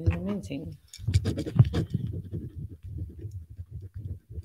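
Scratchy handling noise: irregular crackles and rustles as a jewelry display bust hung with long chain necklaces is moved and rubbed close to the microphone, thinning out near the end.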